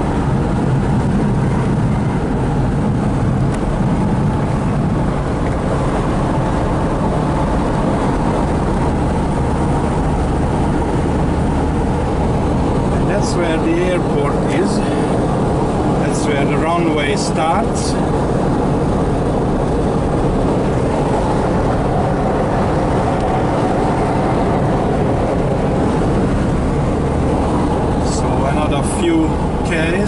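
Steady cabin drone of a 1977 Volkswagen Kombi campervan's rear air-cooled flat-four engine and road noise, cruising at a constant speed on a highway. A few short sharp sounds come about halfway through and again near the end.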